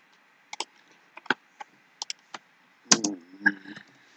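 About eight sharp, scattered computer clicks over the first three seconds, then a brief low hum of a man's voice near the end.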